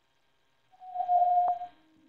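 A single steady electronic beep, a plain mid-pitched tone lasting about a second, with a sharp click near its end.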